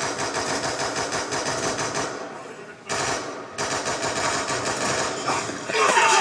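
Stun gun crackling in two rapid bursts of sharp electric snaps, the first lasting about two seconds and the second starting about three seconds in.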